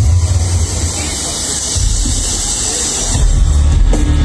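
Loud live industrial music from a concert stage, picked up from the crowd on a phone: a harsh, hissing high noise wash over a deep bass drone. The bass swells heavier about three seconds in.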